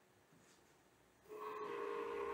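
Motors of a Revopoint dual-axis scanning turntable start about a second and a half in with a faint, steady whine. Both the rotation and tilt axes are driving at once as it returns to its home position.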